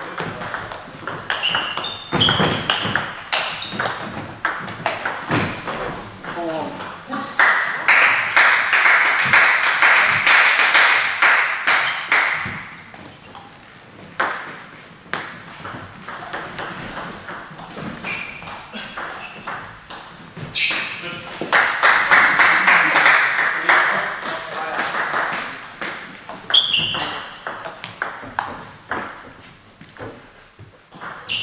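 Table tennis rallies: the ball clicking rapidly off bats and table, with short shoe squeaks on the hall floor. Two spells of applause break in after points, one about seven seconds in and one about twenty-one seconds in.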